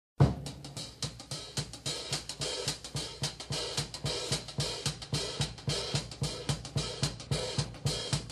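Jazz drum kit playing alone: snare, hi-hat and cymbals in a fast, steady pattern over bass drum strokes at about four a second, opening with one loud hit.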